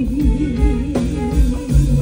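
Live band music led by a guitar line, with a held note that wavers in pitch, over bass and a steady drum beat.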